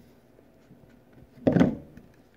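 A single dull knock about one and a half seconds in, from the statue being handled and set onto its stand, among faint handling noise.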